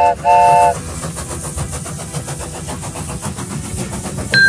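Steam train whistle blowing two short toots, followed by the fast, even chugging of a steam locomotive.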